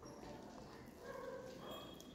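Faint wet squishing of fingers mixing boiled rice with thin fish-curry broth on a steel plate.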